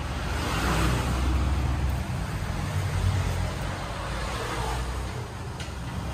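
A car engine idling with a steady low rumble.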